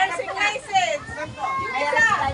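Several women's voices talking and calling out over one another.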